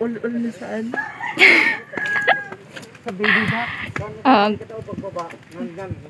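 A rooster crowing, hoarse and loud, a little after the start and again about halfway through, with people talking around it.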